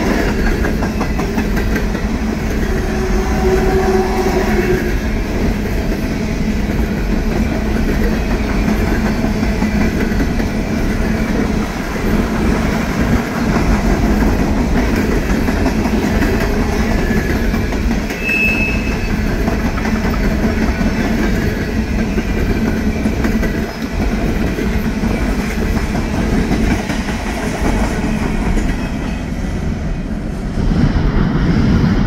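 Freight train's coal hopper cars rolling past at close range: a steady rumble of steel wheels on the rails with clickety-clack over the joints. There are brief wheel squeals near the start and one short, high squeal a little past halfway.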